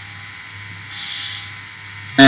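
Steady low electrical hum, with a short soft hiss lasting about half a second, about a second in.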